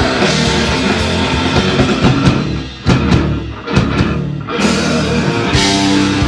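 A live heavy rock trio of distorted electric guitar, bass guitar and drum kit playing loudly. About halfway through, the band drops out for a moment to a few separate drum hits, then crashes back in at full volume.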